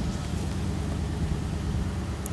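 An engine idling steadily: a low, even hum under a constant hiss.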